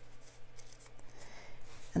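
Faint rustling and small scratchy sounds of a paper sticker sheet being handled while stickers are placed in a planner.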